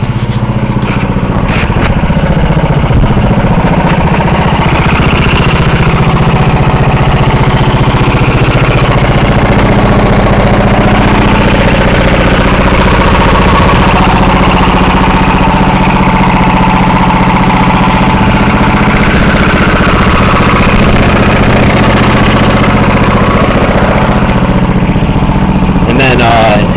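The replacement MTD engine on a 36-inch Scag walk-behind mower, running steadily and loud enough to drown out speech.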